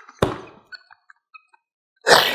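A single sharp thump of a hand slapping the tabletop, just after the start, followed by a few faint bits of laughter.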